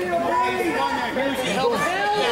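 Crowd chatter: many voices talking and shouting over one another, with no single voice clear.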